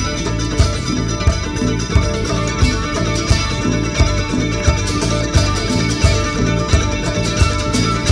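A live band playing an instrumental stretch of a country-rock song, guitar over a steady beat that falls about every two-thirds of a second.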